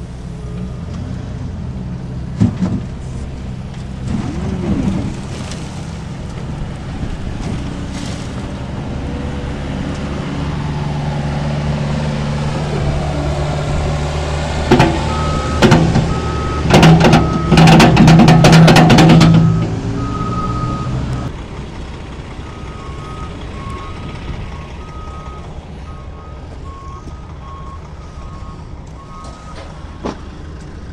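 A wheel loader's diesel engine runs throughout and builds under load as the bucket tips. About halfway through, a load of topsoil pours into a pickup's steel bed with a burst of loud thuds and rattles lasting a few seconds. A reversing alarm beeps repeatedly through the second half.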